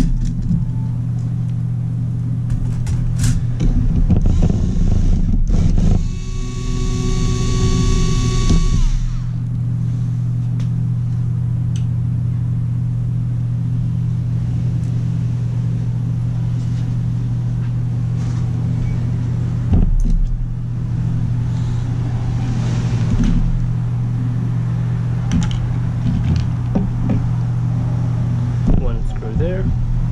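Hitachi cordless electric screwdriver whining for about three seconds, from about six seconds in, as it backs out the screws of a laptop's bottom cover. Clicks and knocks of plastic being handled come around it, over a steady low hum.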